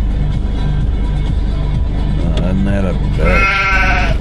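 Sheep bleating a few times in the second half, the last call the loudest and quavering, over background music with a low, stepping bass line.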